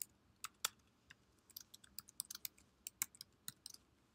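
Typing on a computer keyboard: an uneven run of key clicks, several a second.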